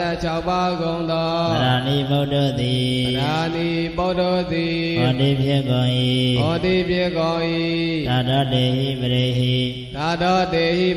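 A monk's voice chanting Pali scripture into a microphone in a slow melodic recitation, holding each syllable as a long note and stepping between a few pitches every second or two.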